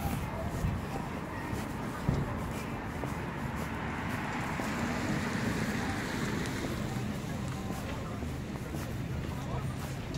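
Snowy city street ambience with wind rumbling on the microphone and road traffic going by; the noise swells for a few seconds in the middle.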